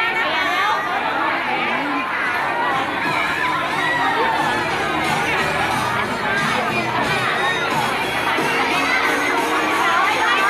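A dense crowd of concert fans shouting, cheering and chattering at close range: many overlapping voices at a steady, loud level.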